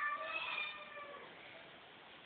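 A high-pitched, wavering voice-like call that fades out a little over a second in.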